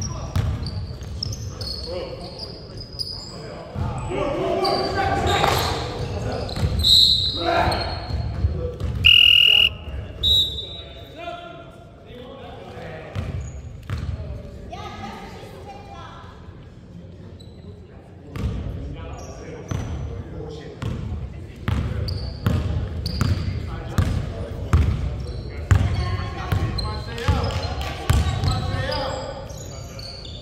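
Basketball game in an echoing gym: the ball bouncing on the hardwood court and players' feet moving, with players calling out to each other. There are a few brief high squeaks a few seconds in, and a louder stretch of voices.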